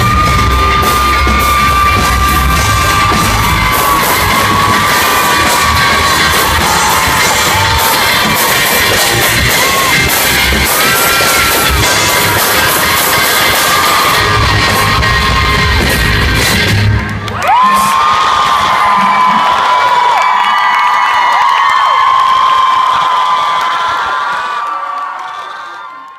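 Concert crowd screaming and cheering loudly over the band's closing music. About 17 seconds in the band stops and the high-pitched screaming and cheering carry on alone, fading out at the end.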